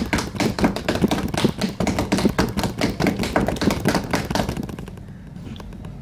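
A drum roll of rapid taps, many a second, that stops about four and a half seconds in.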